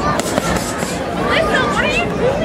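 Boxing gloves smacking against focus mitts, a quick run of sharp hits in the first half second, with voices around.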